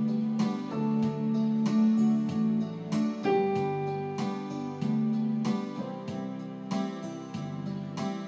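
Electronic keyboard playing a slow instrumental passage, with sustained chords under a melody line and notes struck one after another every fraction of a second.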